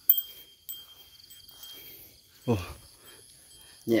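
A sharp click just after the start, and another under a second in, with thin high steady ringing tones, chime-like, holding on behind them. A short low voice sound comes about two and a half seconds in.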